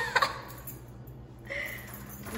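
A woman laughing in short bursts at the start, then a brief voiced sound about a second and a half in.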